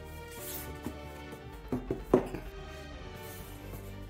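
Background music with steady sustained notes. About two seconds in, a few short handling sounds come as the cardboard sleeve is lifted off a boxed collectible figure.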